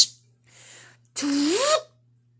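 A person's voice making a short, breathy whoosh that rises in pitch, about a second in, with a faint hiss just before it.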